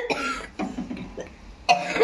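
A woman coughing: a sharp cough at the start and another near the end, with a quieter stretch between.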